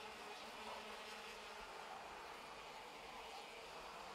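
A pack of OK-class racing karts' 125cc two-stroke engines buzzing at speed, heard faintly as a steady drone.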